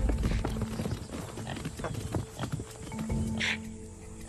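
A herd of topi bolting in alarm, hooves drumming heavily at first and then thinning out, over a steady music drone. A brief hiss sounds near the end.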